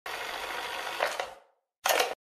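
Cassette deck starting up: a steady tape hiss with a couple of mechanical clicks about a second in, cutting off suddenly, then a short burst of noise near the end.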